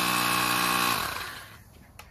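Compressed air hissing through the hose into the shear wave source's inflatable bladder, with a steady buzz under the hiss. About a second in it begins to taper off, and it has nearly died away by the end as the bladder fills and pins the tool.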